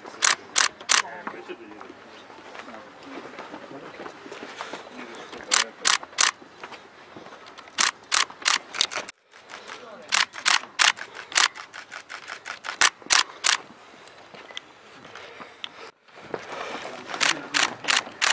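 Camera shutters clicking in quick bursts of two to four a second over a low murmur of voices. The sound cuts out briefly twice.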